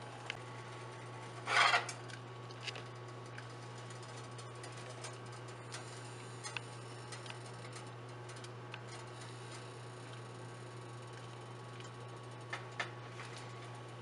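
Tea simmering in a stainless steel pan, faint scattered pops and ticks over a steady low hum, with one brief louder rustle about a second and a half in.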